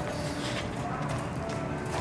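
Open-room ambience: background music with faint distant voices, and light footsteps on a hard floor.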